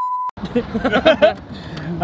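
A short, steady censor bleep lasting under half a second covers a word right at the start. A man's laughter follows, over the low rumble of a moving car's cabin.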